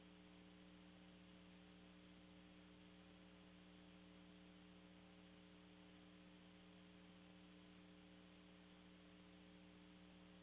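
Near silence: a faint, steady electrical hum of a few fixed tones over light hiss.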